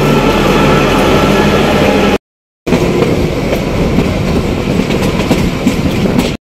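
Kalka–Shimla narrow-gauge train: a diesel locomotive passing close by with its engine running steadily. After a short silent break about two seconds in, the moving train is heard from beside the carriages, wheels clattering on the track.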